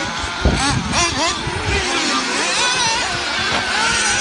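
Small nitro engines of several 1/8-scale RC off-road buggies running loud, their high pitches rising and falling as they rev through the track, with a low thump about half a second in.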